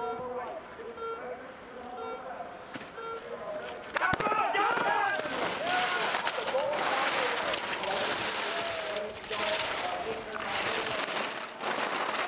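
Electronic start-gate beeps sounding about once a second, then a sharp clack about four seconds in as the parallel slalom start gates open. After it, spectators shout and cheer over the hiss of skis carving on snow.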